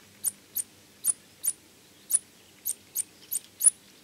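HB Calls reference 75 mouse-squeak fox call blown in short 'fit' puffs: about nine brief, sharp, very high squeaks at an uneven pace, imitating the tiny squeaks of field mice underground to lure a fox. Not very impressive to hear.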